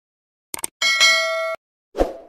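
Subscribe-button animation sound effect: a couple of quick clicks, then a bright notification bell ding that rings with several steady tones for about three quarters of a second and cuts off suddenly. A sharp thump comes right at the end.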